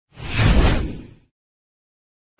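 A single swoosh sound effect with a deep rumble beneath it, swelling to a peak about half a second in and dying away by just over a second.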